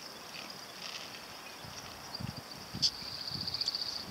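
Steady high chirring of insects, turning into a rapid pulsing trill for the last second, with low rolling scrapes of inline skate wheels on asphalt in the middle and one sharp click a little before the end.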